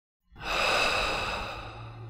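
A long breathy exhale, a sigh, that swells quickly and fades over about two seconds before cutting off abruptly, with a low hum under its tail.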